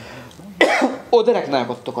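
A single short cough about half a second in, between stretches of a man's speech.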